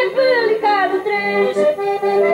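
Accordion playing a traditional folk tune. A high voice ends a sung note that slides down in pitch within the first second, and then the accordion carries on alone with a steady pulse.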